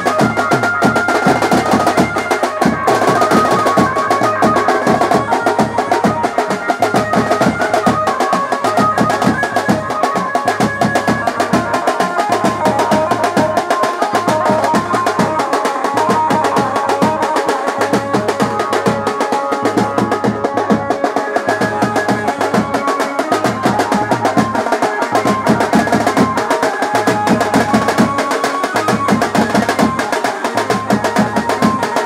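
Desi band baja drumming at a fast, steady beat: snare-type side drums played with sticks over regular hits on a big bass drum, with a held melody line running over the top.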